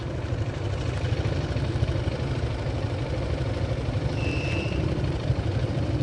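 A vehicle engine idling with a steady low rumble. A short high beep sounds once a little past the middle.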